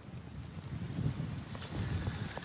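Tropical-storm wind buffeting an outdoor microphone: an irregular low rumble under a faint hiss.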